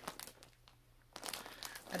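Plastic mailer bag crinkling as it is handled, with a short quiet pause a little after half a second in before the rustling picks up again.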